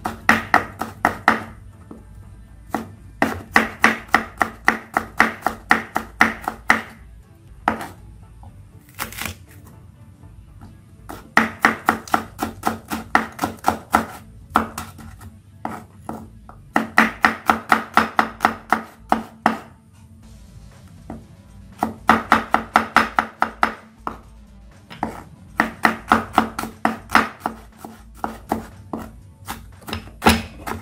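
Kitchen knife mincing garlic and shallots on a wooden cutting board: quick runs of chops, about five a second, in bursts of a few seconds with short pauses between.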